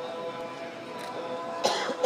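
Steady held musical tones like a drone, with faint crowd voices underneath. Near the end a loud, short burst from a voice close to the microphone, like a cough.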